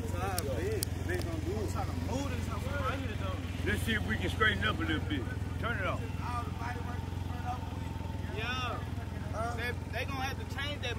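Can-Am three-wheeled motorcycle idling steadily, with several people talking in the background.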